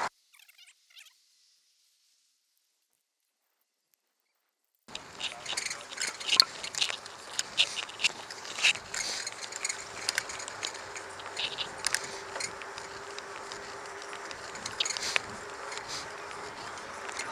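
Near silence for about the first five seconds, then the noise of a bicycle being ridden: a steady hiss of wind and road with frequent irregular clicks and rattles.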